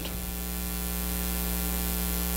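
Steady electrical mains hum, a low buzz with evenly spaced overtones, with a faint hiss over it.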